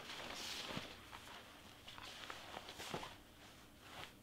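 Soft rustling and sliding of a fleece sweatshirt and a brown cover sheet being pushed across a cutting mat, loudest in the first second, with a few faint taps.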